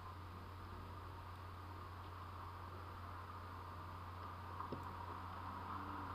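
Quiet room tone: a steady low hum and hiss, with a faint click about three-quarters of the way through.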